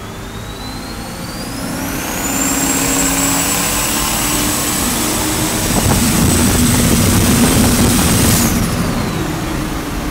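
Turbocharged Dodge 440 big-block V8 pulling hard, heard from inside the cab, with the whine of its BorgWarner 84 mm turbo. The whine climbs in pitch over the first two seconds as the turbo spools up, holds high and steady under load, then drops away suddenly about eight seconds in as the boost comes off.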